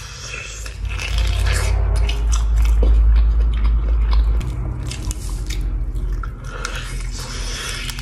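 Close-up biting and chewing of cooked chicken pieces, with many small sharp clicks and a deep low rumble that is loudest from about one to four and a half seconds in.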